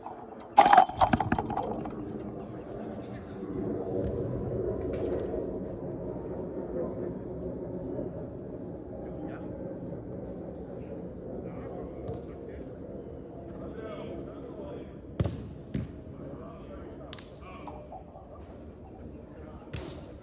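Players' voices calling across an outdoor football pitch, with a loud clattering impact just after the start and two sharp thuds of a football being kicked about three-quarters of the way through.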